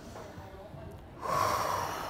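A deep breath out, blown close into a handheld microphone: a rushing exhale that starts a little over a second in and slowly fades.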